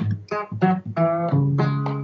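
Acoustic guitar strumming chords, several strokes with the last chord ringing on, in the closing bars of a song.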